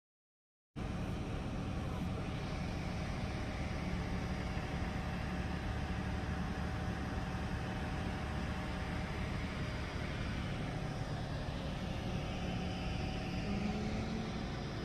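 Steady running noise of a golf cart in motion, a low rumble of motor and tyres on tile with a faint steady whine, starting about a second in.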